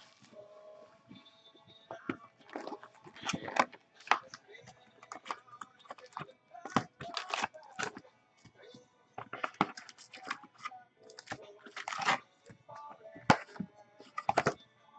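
Trading cards and foil card-pack wrappers being handled: irregular crinkling, rustling and sharp clicks as packs are opened and cards flipped.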